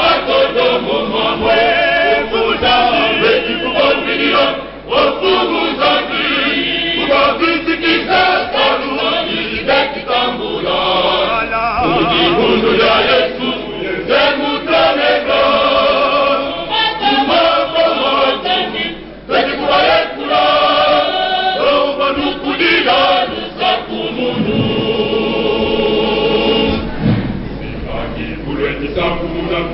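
A choir of men and boys singing together, with brief breaks between phrases about 5 and 19 seconds in.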